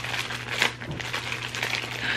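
Clear plastic packaging of a vacuum-sealed bag crinkling in the hands as it is handled and worked open, in a run of short, irregular crackles.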